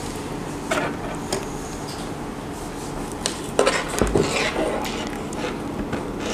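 Scattered light clicks and clatter from handling a fiber optic patch cord and plugging its connector into the SFP port of an industrial network switch.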